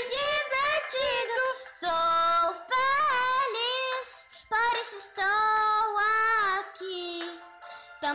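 A child singing a cheerful children's pop song over a musical backing, in phrases of long held notes that waver slightly.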